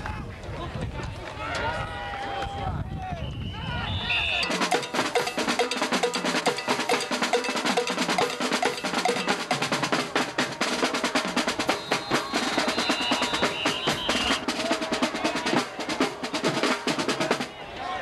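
Snare-heavy drums play a rapid, continuous cadence with a few held notes beneath, typical of a school band's drumline. The drums start about four seconds in, after scattered crowd voices, and stop shortly before the end.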